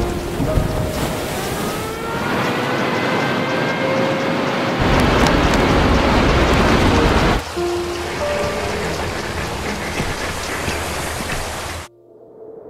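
Storm sound effects of heavy rain and wind with thunder, laid over dramatic music. A louder rush of wind noise fills the middle, and the sound cuts off suddenly just before the end.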